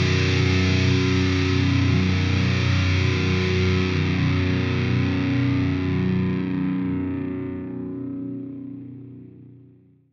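The last chord of a rock song, a distorted electric guitar chord left ringing. It holds steady for about six seconds, then fades away to silence over the last few seconds.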